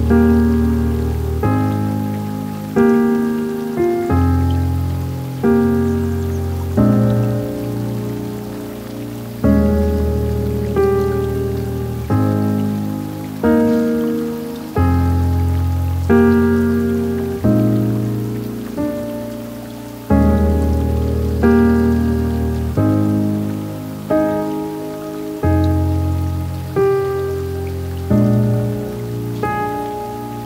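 Slow, soft piano music: chords struck about every second and a half, each ringing out and fading before the next, over a faint steady hiss.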